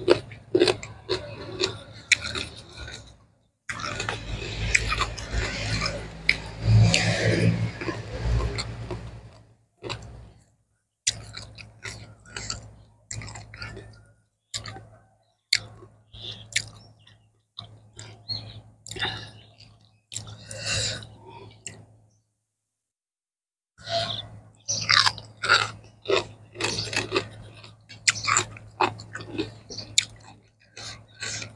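Close-up chewing of a raw minced-meat salad with crisp fresh vegetables: wet chewing and crunching in bursts, densest about 4 to 9 seconds in. There are two brief silent gaps, one around 10 seconds in and one a little past the two-thirds mark.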